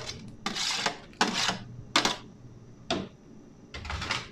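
Metal ladle scraping and knocking against a plate as cut okra is pushed off it into an aluminium wok of simmering broth: about five short clattery strokes, some brief scrapes and some sharp taps.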